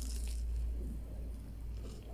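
A bite into crispy breadcrumb-coated fried bread: a short crunch at the start, then quiet chewing over a low steady hum.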